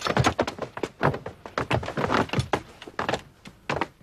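A scuffle of men fighting: a fast, dense run of thuds, knocks and clatters from bodies and objects being knocked about, thinning out near the end.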